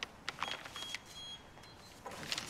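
A brown paper envelope being handled and passed from hand to hand: a few soft crinkles and taps, mostly in the first second, with a faint brief high tone.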